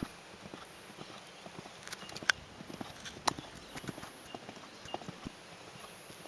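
Hoofbeats of a Thoroughbred gelding being ridden on a sand arena, heard as irregular sharp clicks, the loudest a little after two and three seconds in.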